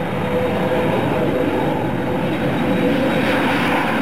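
Jet airliner taking off, its engines at full power: a loud, steady roar with a whine running through it, growing slightly louder.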